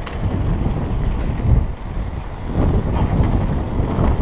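Wind buffeting a helmet-mounted camera's microphone during a fast downhill mountain bike descent, with the rumble of the tyres on the dirt trail; it surges about one and a half seconds in.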